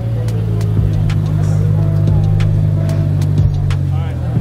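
A car engine running at low speed, heard as a steady low drone, with scattered clicks and music over it.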